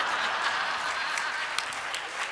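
Audience applauding: a steady patter of many hands clapping, easing off a little near the end.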